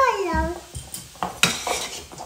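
Kitchen utensils clinking and tapping against a pan on the stove, a few sharp knocks spread through the second half, as a spice shaker is used over the pan.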